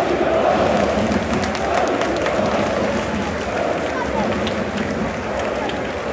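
Large stadium crowd of football supporters singing and cheering en masse, with nearby voices and scattered clapping; the massed singing eases off about halfway through.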